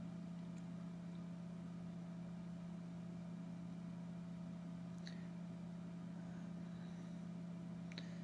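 A steady low hum of background noise with a faint higher tone over it, and two faint clicks, about five seconds in and near the end.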